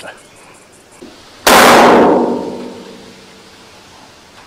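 Bonnet of a Toyota Land Cruiser slammed shut: one loud metallic clang about one and a half seconds in, ringing and fading over about a second and a half.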